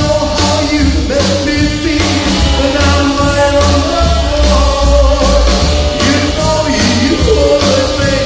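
Rockabilly band playing live: upright double bass, electric guitar, saxophone and drum kit, with a steady beat of drum hits about twice a second under a long held melody line.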